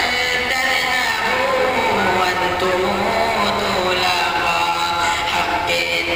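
A young man singing an Urdu nazm, a devotional poem, solo into a handheld microphone. His amplified voice carries a melodic line with long held notes.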